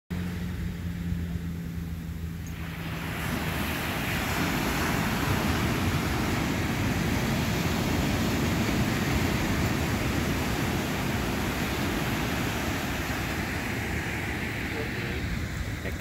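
Ocean surf breaking and washing up a sandy beach, a steady rush that builds about two and a half seconds in and eases slightly near the end.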